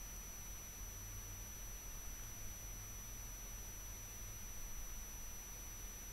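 Faint steady hiss from the recording microphone, with a low electrical hum and a thin high whine under it: room tone with no other sound.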